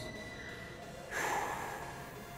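A man's sharp, noisy breath out about a second in, from the effort of holding a wall sit.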